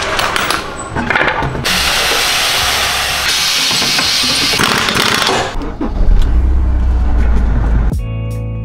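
Tire-shop air tools at work: short rattling sounds at first, then a long steady hiss of compressed air lasting about four seconds, followed by a loud low rumble near the end.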